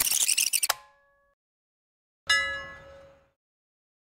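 A busy, crackly outdoor recording cuts off abruptly under a second in. After a second of silence, a single bright metallic ring, like a struck chime or a blade's 'shing', sounds and dies away over about a second.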